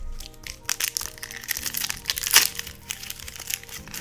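Foil trading-card booster pack wrapper crinkling in the hands as it is picked up and opened: a run of sharp rustles, loudest a little past the middle, over soft background music.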